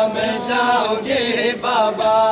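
A man's voice chanting a nauha, a Shia mourning lament, in long wavering held notes with a brief break a little past the middle.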